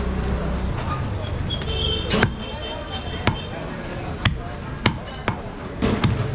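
A large butcher's knife chopping goat meat on a wooden stump block: about six sharp chops, roughly one a second, beginning about two seconds in.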